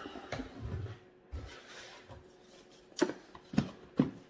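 Cardboard boxes being handled: a product box slid out of a cardboard shipping carton with scraping and rustling, then three sharp knocks about half a second apart near the end as the box is knocked against the carton or table.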